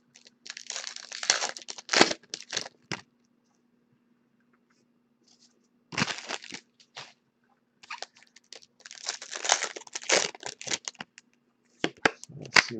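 Trading card packaging being torn open and crinkled by hand, in three spells of tearing and rustling: the first about half a second in, a short one around six seconds, and a longer one from about eight to eleven seconds.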